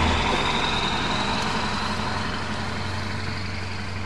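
School bus engine running as the bus drives away, fading steadily, with a faint high whine that rises slightly.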